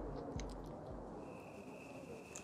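Quiet background hiss with a few faint clicks, and a faint steady high-pitched tone that comes in a little past halfway.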